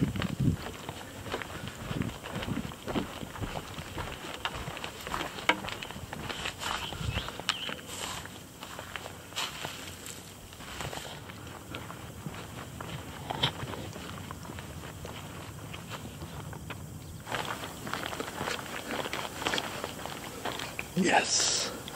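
Footsteps of a person walking on wooden decking, a run of irregular light knocks and scuffs.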